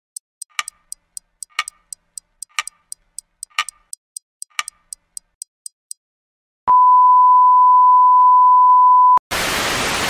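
Clock-ticking sound effect, about four ticks a second with a heavier tick every second, for about six seconds. After a short pause comes one loud steady beep lasting about two and a half seconds, which cuts off abruptly. TV-static hiss follows near the end.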